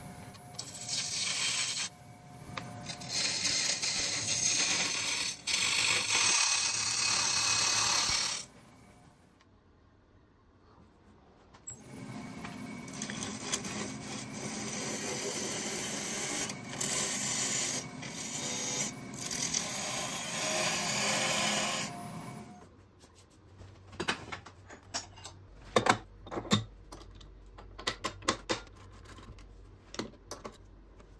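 A gouge cutting an epoxy resin and wood blank spinning on a wood lathe: a loud hissing scrape in two long passes of about eight and ten seconds, with a short quiet gap between. Near the end come a series of sharp clicks and knocks.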